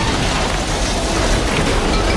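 Film sound effects of a runaway train crashing: a dense, loud, continuous crashing noise with a heavy low rumble.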